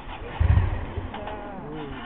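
A Ducati Monster 400's air-cooled L-twin being cranked to start, with a loud low burst about half a second in.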